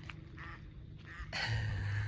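Waterfowl calling: a few short calls, then a longer, noisier call near the end.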